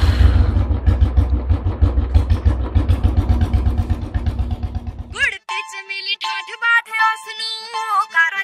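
Royal Enfield single-cylinder motorcycle engine running with a rapid, even thump. It cuts off abruptly about five seconds in, and tuneful music takes over.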